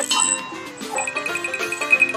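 Electronic slot-game music with chiming sound effects. About a second in, a rapid high repeating ping starts, the kind that plays as a win total counts up.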